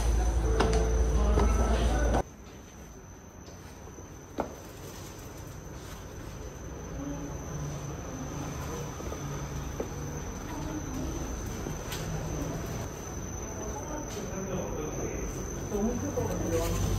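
A steady, thin high-pitched whine over quiet room noise. Loud low rumble for the first two seconds stops abruptly, and there is a single sharp click about four seconds in.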